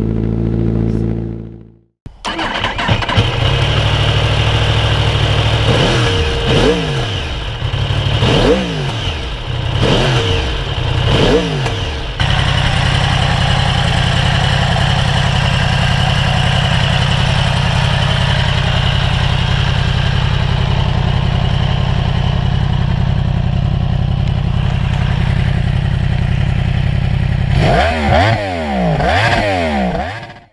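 Honda CBR1000RR inline-four idling through its Leovince titanium full exhaust, fading out within the first two seconds. A sport motorcycle engine then idles and is blipped four times, each rev rising and falling back. It settles into a steady idle and is revved again near the end.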